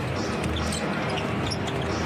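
Live basketball game in an arena: steady crowd noise, with sneakers squeaking on the hardwood and the ball bouncing.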